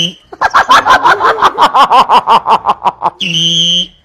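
A man mimicking a football referee with his voice: a fast run of short repeated vocal sounds for about three seconds, then a held, whistle-like note near the end that imitates a referee's whistle blast.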